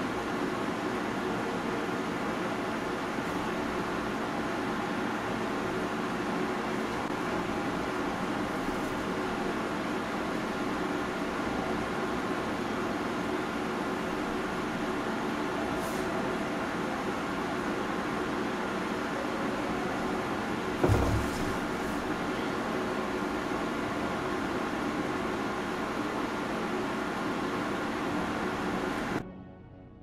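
Steady background hiss and hum with faint steady tones, broken by a single soft thump a little after the middle.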